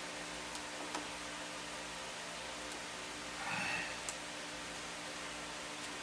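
Faint handling sounds of a clay figure on its armature: a few light clicks and a short rustle a little past halfway, over a steady hiss.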